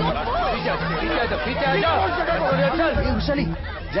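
Several voices talking over one another in a confused babble, with film background music underneath playing short repeating low bass notes.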